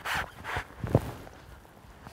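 Brief rustling and scraping as a wet landing net is drawn in and handled, with a single knock about a second in.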